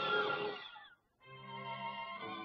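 Orchestral cartoon score. A passage slides down in pitch and fades to a brief total silence just before the middle, then a steady held chord with strings comes in.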